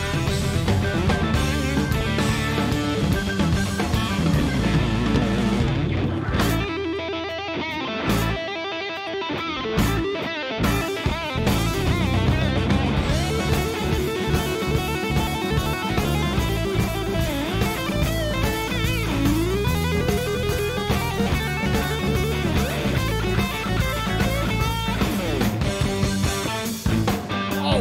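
Instrumental blues-rock with an electric guitar playing lead over a drum kit. About six seconds in the drums and low end drop out for a few seconds, leaving the guitar nearly alone before the band comes back in.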